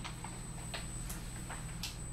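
Quiet room tone with a steady low hum and a few faint, irregularly spaced ticks or clicks.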